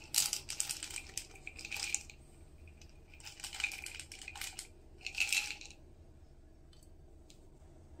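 Dried allspice berries rattling and clicking in a spice jar with a plastic sifter cap as they are shaken out, in three bursts of clicking over the first six seconds.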